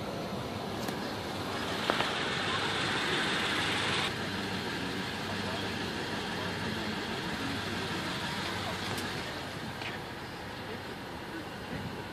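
Steady background road-traffic noise heard through the truck's open doors, with a louder hissing stretch about two seconds in that stops abruptly about four seconds in, and a few light clicks.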